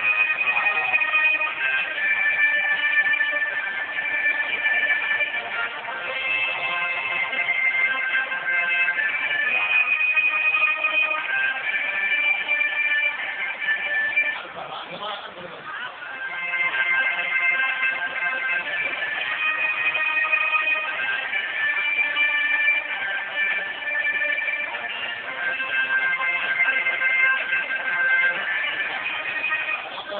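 Loud guitar-driven music from a fairground ride's sound system, with a voice over it; it goes quieter for a couple of seconds about halfway through.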